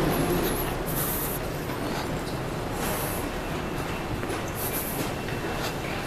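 Steady low rumble and hiss of a large airport terminal hall, with a soft high swish repeating about every two seconds.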